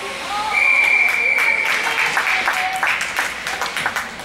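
Hockey referee's whistle blown once about half a second in, a single steady high tone held for about a second and a half, signalling a stoppage of play. Spectators clap and voices call out through the rest of it.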